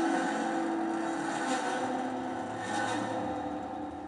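Held instrumental notes from the song's intro, ringing steadily and slowly fading out.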